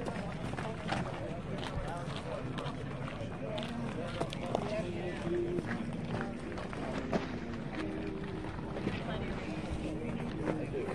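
Indistinct background chatter of several people talking outdoors, with scattered footsteps crunching on gravel.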